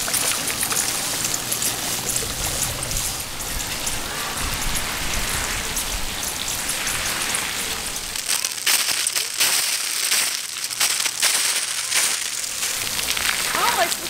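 Splash-pad water jets spraying and splashing onto wet concrete, a steady hiss of falling water. About eight seconds in, the spray pelts the camera directly and the sound turns into close, crackling spatter.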